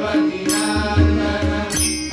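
Indian devotional chanting by male voices, accompanied by tabla strokes on the deep bass drum and the pitched treble drum, with a barrel drum. Small hand cymbals clash twice.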